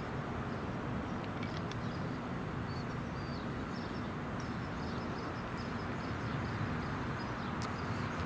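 Outdoor ambience: a steady low hum of distant traffic, with a few faint, short high chirps from birds.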